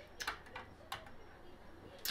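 A few faint, short clicks, spread apart over two seconds, with near quiet between them.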